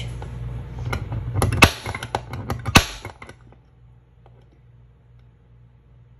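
Center punch marking a dimple on a fork as a starting point for a drill bit: two sharp metallic snaps about a second apart, with lighter clicks of metal on metal around them.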